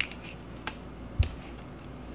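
Tarot cards being handled and laid down on a table: three sharp clicks, the last, just over a second in, with a soft thump.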